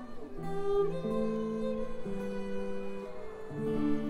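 Acoustic guitar strummed, its chords ringing and changing about once a second.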